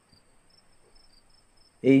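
Faint insect chirping: short high pulses repeating a few times a second, over a thin steady high whine. A voice begins near the end.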